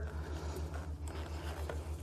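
Faint rustling and light scraping of a gloved hand pushing a plastic 12-volt relay into place under a metal bracket, with a couple of soft ticks, over a steady low hum.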